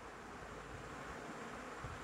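Faint, steady background hiss of room tone, with no distinct event.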